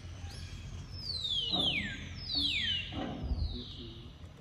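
A series of high, whistled animal calls, each falling steeply in pitch, the loudest two about a second apart in the middle.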